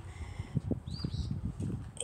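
Footsteps on bare dirt as someone walks, uneven soft thuds, with one faint short bird chirp about a second in.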